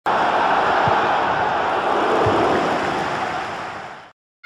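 Intro sound effect for an animated logo: a loud, even rushing noise that starts abruptly and fades out over the last second.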